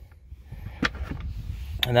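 Plastic center console bin liner lifted out of its compartment, giving one light plastic knock a little under a second in, over a faint low hum.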